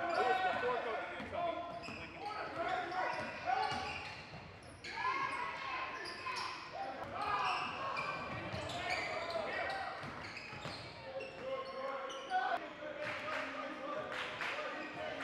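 Basketball dribbled on a hardwood gym floor, bouncing repeatedly, with untranscribed voices in the gym throughout.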